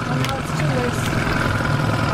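A boat's outboard motor running steadily at low trolling speed.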